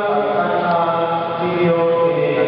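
A church congregation singing a slow chant-like hymn together, the voices holding long steady notes and moving in steps from one note to the next.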